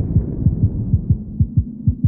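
Outro music stripped down to a bare, low thumping pulse of several beats a second, like a fast heartbeat, the rest of the track cut away.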